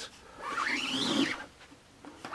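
Rubber squeegee pulled across an inked screen-printing screen in a print stroke, pushing water-based ink through the mesh: a scraping drag with a squeak that rises and then falls in pitch, lasting about a second.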